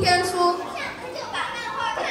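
Children's voices reciting on stage, with one syllable drawn out at a steady high pitch for about the first half-second.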